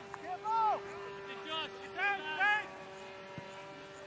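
Several short shouted calls from players on the field, about half a second in and again around two seconds, over a steady faint hum like a distant engine.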